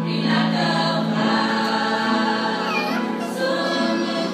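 A girls' choir singing a hymn in unison and parts, over held low notes from an accompanying keyboard.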